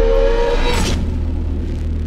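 Logo-sting sound design: a held motor-like tone stops about half a second in, a whoosh follows just before one second, and a low rumble carries on, slowly fading.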